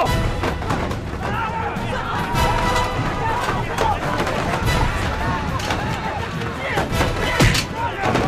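A brawl: men shouting and yelling amid scattered thuds of a scuffle, over dramatic action music.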